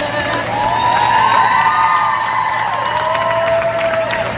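Crowd cheering, with many high overlapping shouts and whoops and scattered clapping at the end of a live song.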